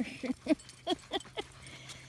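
A woman laughing: a run of short, separate bursts of laughter that tails off after about a second and a half.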